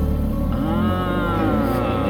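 A red Ford Mustang's engine rumbling as the car pulls away, with one rev that rises and falls.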